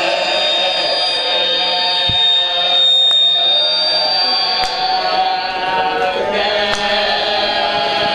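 A man's voice chanting a mournful masaib recitation, a lament for a martyr, through a loudspeaker, with other voices crying out beneath it. A high steady whistle runs through the first half.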